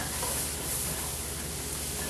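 Chopped onions, carrots and garlic sizzling in a hot pot over the browned-beef drippings, a steady even hiss.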